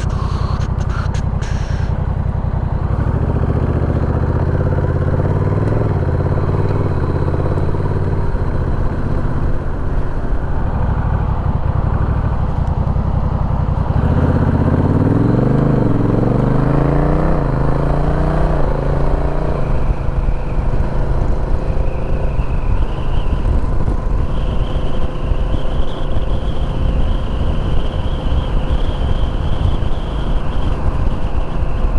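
Honda Rebel 1100 DCT's parallel-twin engine pulling away and accelerating, its pitch climbing in several steps as the dual-clutch gearbox shifts up about halfway through, then settling into a steady cruise with wind noise.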